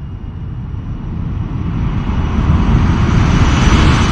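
A deep rumbling whoosh from a film title sequence that swells steadily louder, then starts to fade near the end.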